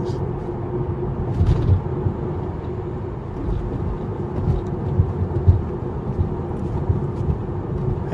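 Steady road and tyre rumble inside a moving Tesla Model 3's cabin, with a faint steady hum above it and no engine note.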